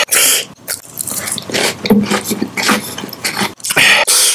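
Close-miked chewing and wet mouth noises, an irregular run of crunchy, crackly bursts, loudest at the start and again near the end.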